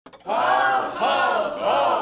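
A group of voices singing three short rising-and-falling phrases at the opening of a hip-hop track, starting about a quarter second in.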